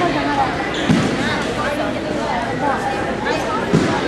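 Indistinct talking from people in a large hall, with two dull thuds, one about a second in and one near the end.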